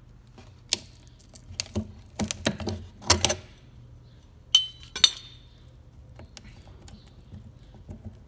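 Scattered clicks and clinks of hard metal parts being handled, about a dozen in the first five seconds. Two sharper clinks about four and a half and five seconds in ring briefly.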